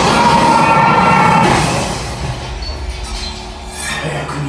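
Dramatic show soundtrack music from the attraction's speakers, loud and dense for about the first second and a half, then dropping quieter.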